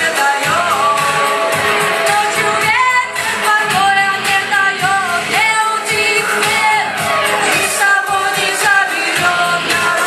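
A woman singing into a microphone over a backing track with a steady beat, holding long notes that slide in pitch.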